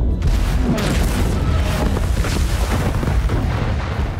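Large explosion of a ship as a timed charge sets off its powder magazine: a heavy boom right at the start that runs on as a long, deep rumble with crackling throughout.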